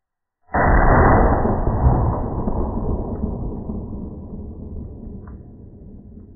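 A sudden deep boom with no high end, about half a second in, that dies away slowly over several seconds: an impact sound effect added in editing.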